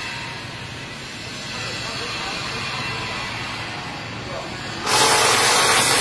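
Workshop background noise, then a loud steady hiss that starts abruptly about five seconds in.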